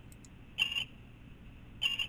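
Yaskawa Sigma-7 servo motor singing with a short high-pitched whine twice, once about half a second in and again near the end: mechanical resonance vibration under a very aggressive tuning level, which the notch filter is being dialed in to suppress.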